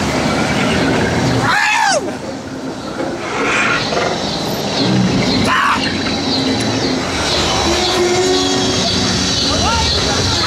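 Loud, dense haunted-attraction soundscape: rumbling ambient sound effects with a wailing voice that glides up and down about two seconds in, and a steady low drone in the second half.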